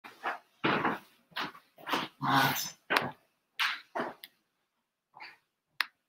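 A dog barking in a string of short, separate barks, about ten in the first four seconds, then a couple of fainter ones near the end.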